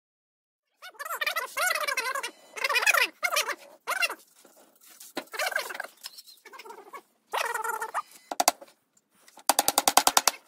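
Birds calling in a series of wavering calls, with a fast rattling call near the end.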